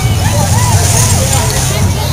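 Fairground midway din: voices and music mixed over a steady low rumble.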